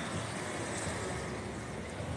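Steady outdoor street noise heard while riding along slowly: an even hiss with no distinct events.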